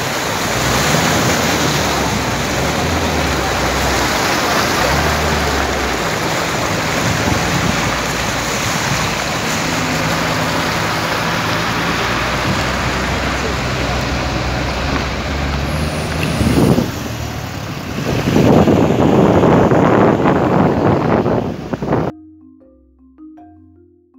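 Floodwater rushing across a street, a loud steady wash, with a vehicle engine running low underneath. The rushing grows louder for a few seconds near the end.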